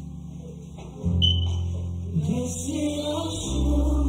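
Gospel song: sustained chords that change about a second in and again near the end, with a voice singing over them from about halfway through.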